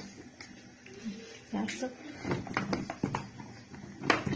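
A wooden rolling pin is rolled over dough laid on a plastic ravioli mould, pressing it through along the mould's ridges to cut the ravioli, with a few soft knocks past the middle. A low voice is heard briefly.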